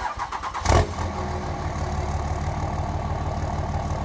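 Pickup truck engine cranking for about half a second, firing with a loud burst under a second in, then settling into a steady idle.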